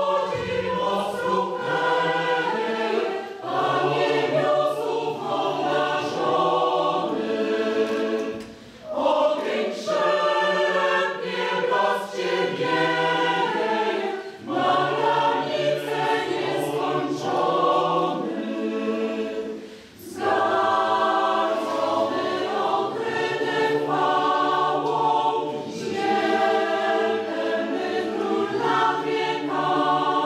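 Mixed choir of women's and men's voices singing in parts, in phrases broken by short breaks about 9, 14 and 20 seconds in.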